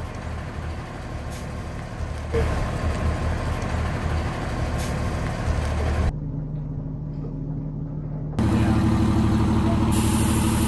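Tiffin Allegro Bus diesel-pusher motorhome's engine running as the coach moves slowly, a low rumble under a broad rush of noise. The sound shifts abruptly about two, six and eight seconds in. For the last second or so the engine is close and gives a steadier, louder hum.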